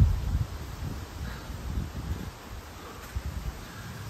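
Wind rumbling on the microphone, with leaves rustling in the trees.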